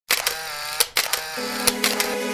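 Logo intro sound: a handful of sharp clicks over ringing musical tones.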